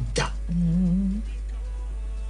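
A person's voice humming one drawn-out 'mm', rising slightly in pitch, over faint background music.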